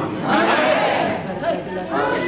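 Speech only: a man talking into a handheld microphone, carried through the sound system of a large hall.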